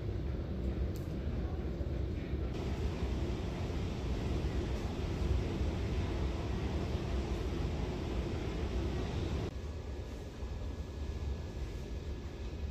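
Steady low rumble with a hiss over it, no distinct events. The hiss grows louder a couple of seconds in and drops off near the end.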